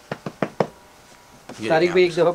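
Four quick, sharp knocks in the first half-second or so as a folded cloth suit is flipped open and handled on a shop counter. A voice starts about a second and a half in.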